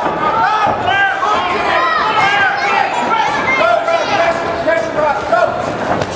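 Spectators and cornermen shouting and calling out over one another at a live fight, several voices at once, with an occasional thud of a strike.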